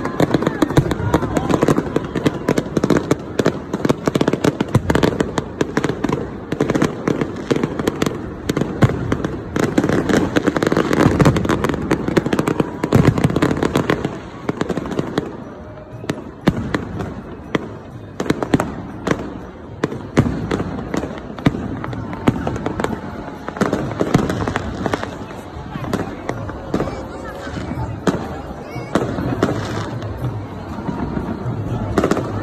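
Fireworks going off overhead: a rapid, overlapping barrage of bangs and crackles, densest in the first half and thinning somewhat after the middle, over a crowd's voices.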